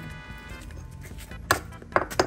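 Two sharp hammer strikes on a small stone lying on concrete, about half a second apart near the end, cracking it into small pieces; background music plays underneath.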